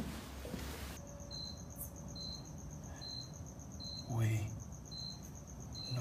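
A cricket chirping, one short high chirp a little more often than once a second, over a steady high insect trill, starting about a second in. About four seconds in comes a brief, louder, voice-like sound whose pitch falls.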